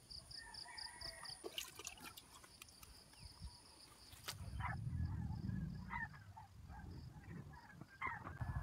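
Faint outdoor sounds: a high chirping of about four pulses a second that fades out in the first few seconds, then a few short scattered bird calls, with a low rumble from the handheld camera moving about halfway through.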